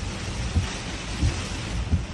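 Heavy rain beating on a car's windshield and body, heard from inside the car, as a steady hiss with a low rumble underneath.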